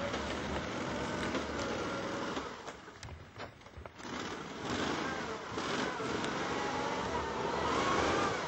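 Engine of a tracked Argo amphibious ATV running as it drives through snow. Its note wavers, falls away for a couple of seconds midway, then comes back louder and rises in pitch as the engine revs up near the end.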